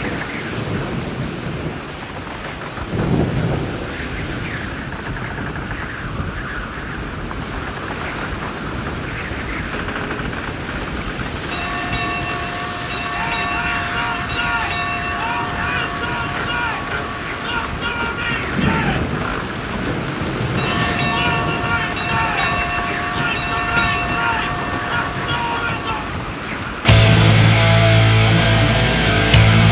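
A steady rushing, storm-like noise, with held tones and a wavering melody laid over it in two long stretches in the middle. About a second before the end, loud heavy-metal music with distorted electric guitar cuts in suddenly.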